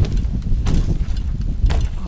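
A 20-inch BMX bike rolling on asphalt, with wind rumbling on the microphone and a few sharp knocks and rattles from the bike.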